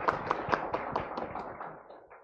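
Small audience clapping: quick, even claps at about four to five a second, tapering off near the end.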